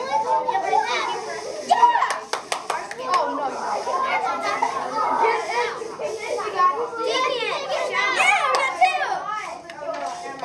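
Several children talking and calling out over one another, with a quick run of sharp clicks about two seconds in.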